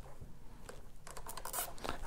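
Wiring harness being worked and fastened against plastic snowmobile trim: faint rustling and scratching, then a quick run of small clicks and scrapes in the second half.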